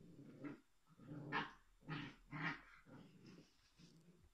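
A dog growling in about five short bursts.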